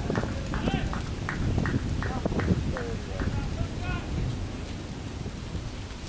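Outdoor cricket-field ambience: wind rumbling on the microphone, distant players' voices calling, and a run of about nine sharp taps, roughly three a second, that stops about three seconds in.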